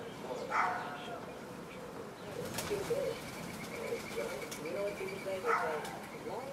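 Eurasian collared doves cooing: low, soft notes repeated in short phrases.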